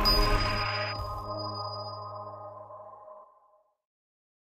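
The last chord of an outro jingle ringing out together with a thin, high pinging tone. It fades steadily and dies away after about three seconds.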